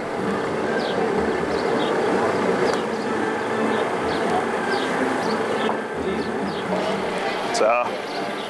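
Steady outdoor background noise with indistinct voices and a low hum. Short, high falling chirps come through about once a second.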